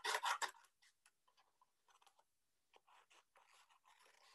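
Scissors cutting shapes out of card, the card rustling as it is handled: a quick run of snips in the first half second, then faint scattered snips and scrapes.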